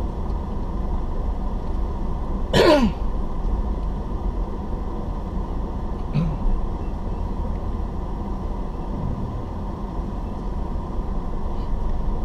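Steady low engine and road rumble inside a car crawling in city traffic. About two and a half seconds in, a short vocal sound falling in pitch, like a throat being cleared, with a couple of much fainter small vocal sounds later.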